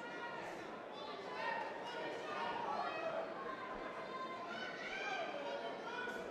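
Indistinct voices from the ringside crowd and corners, shouting and talking and echoing in a large hall during the boxing bout.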